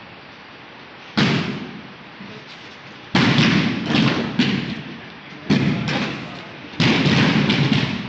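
Thuds of several bodies rolling back onto judo mats at once, in uneven clusters: one about a second in, a run between three and four and a half seconds, then more near five and a half and seven seconds. Each thud trails off in the echo of a large hall.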